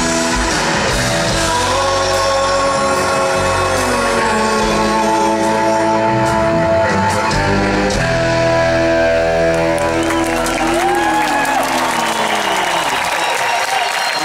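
Live rock band playing a passage between sung lines, with electric guitars, drums and keyboards. Long held notes, with sliding guitar lines near the end.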